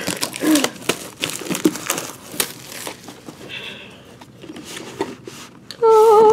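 Thin plastic shrink wrap crinkling and tearing as it is pulled off a cardboard trading-card box, in quick irregular crackles that thin out about halfway through.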